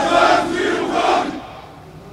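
A formation of soldiers shouting a greeting in unison, answering the saluting commander. It is one loud chorus of about three drawn-out syllables that stops about a second and a half in.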